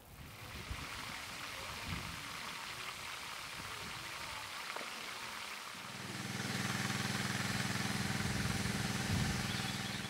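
Steady outdoor background noise, joined about six seconds in by a steady low hum that fades near the end.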